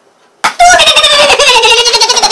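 After a brief silence, a loud warbling call sets in about half a second in, its pitch sliding slowly downward.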